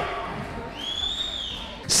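Title-animation sound effect: a whooshing tone that swells and falls away about a second in.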